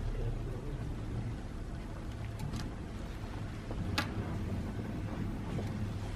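Steady low workshop hum with two short sharp clicks, about two and a half and four seconds in.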